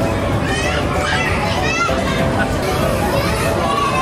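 Many young children's voices in a busy indoor play area: shouting, squealing and chattering over one another in a steady din.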